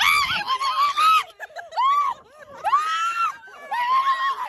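High-pitched excited squeals and shrieks from people, several in a row, each rising and falling, mixed with laughter, as stingrays swim around their feet.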